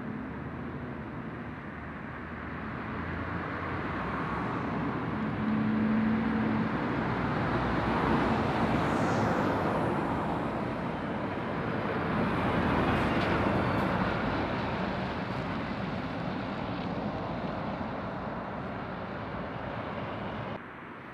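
Heavy lorries and cars passing close on a roundabout approach: diesel engines and tyre noise swell as the vehicles come round the bend and go by, loudest in the middle with two peaks, then fade.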